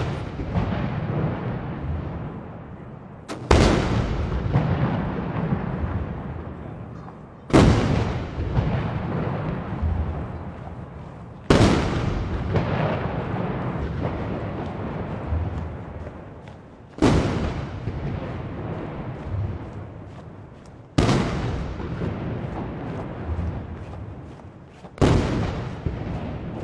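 A line of ceremonial salute guns firing blank rounds in volleys, six booms about four seconds apart, each followed by a long echoing rumble.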